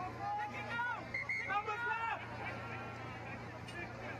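Men's voices talking and calling out through the first half, fainter after, over a steady low hum.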